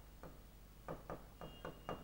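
Faint, irregular taps and strokes of a marker pen writing on a whiteboard.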